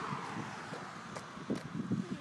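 Faint wind on the microphone and distant road traffic, with soft footsteps on a concrete sidewalk in the second half.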